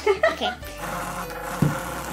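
A child laughs briefly, then a single knock about one and a half seconds in, as a toy piece is set down on the wooden tabletop, over a faint steady tone.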